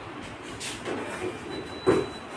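Plastic knocks and rattles from hands working on the open casing of a split air conditioner's indoor unit: a few light knocks, then a sharper one just before the end.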